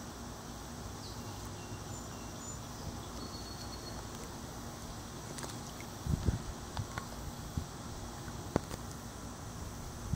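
Quiet outdoor ambience by a pond: a steady low hiss with a few faint, short high chirps, then a cluster of low thumps and a few sharp clicks starting about six seconds in.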